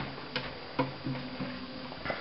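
Quiet room with a few faint, short clicks spaced roughly half a second apart.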